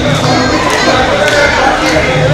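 A parade crowd shouting and calling out together, many voices at once, with a few sharp knocks among them.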